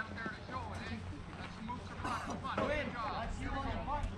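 Indistinct voices of people talking in the background, over a low steady rumble.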